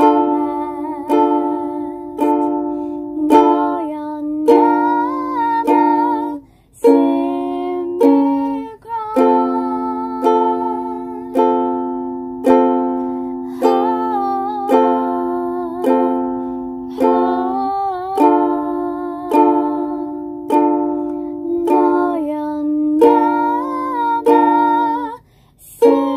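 Ukulele strumming chords, about one strum a second, each chord ringing and fading before the next. The strumming breaks off briefly a few times, about a quarter and a third of the way in and just before the end.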